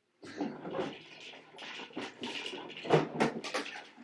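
Clattering, rattling and knocking of plastic children's toys being handled and moved about, with sharper knocks around the middle and near the end.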